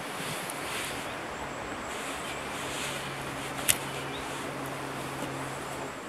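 Steady outdoor background noise with a low, steady hum under it, and a single sharp click a little over halfway through.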